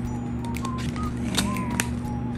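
Quiet background music, a simple high melody stepping between a few notes over a steady low hum, with two sharp clicks about a second and a half in as the plastic drive-thru microphone toy is handled.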